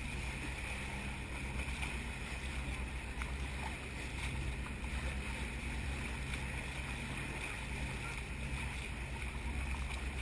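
Steady rush of water and wind at the bow of a boat under way, over a low, even hum.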